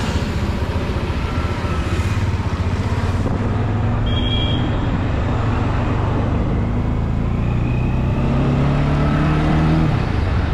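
Bajaj Dominar motorcycle's single-cylinder engine running while riding, with wind and road noise; the engine pitch rises over the last few seconds as the bike speeds up.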